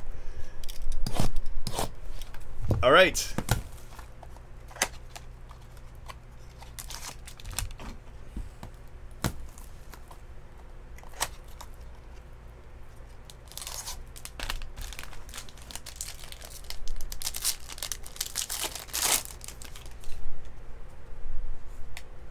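Trading-card box and its wrapping being torn open by hand: scattered tearing and crinkling sounds with small clicks. The longest and loudest bursts come near the end.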